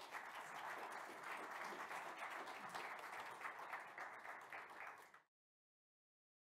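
Audience applauding, a dense patter of many hands clapping that cuts off abruptly a little after five seconds in.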